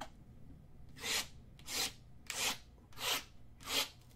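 Five evenly spaced rasping strokes, about one every two-thirds of a second, like something being scraped.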